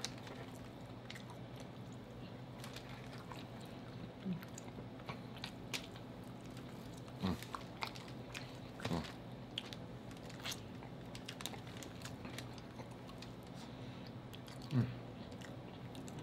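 Close-miked chewing and wet mouth clicks of people eating baked chicken and corn on the cob, the clicks scattered and irregular over a faint steady low hum. A short 'mm' of enjoyment about halfway through and again near the end.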